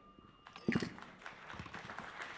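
Audience applause after a speech: fairly quiet clapping from a seated audience, starting about half a second in and continuing.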